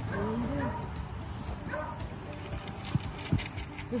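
Two short, low thuds from a horse, about a third of a second apart, near the end, over faint voices at the start.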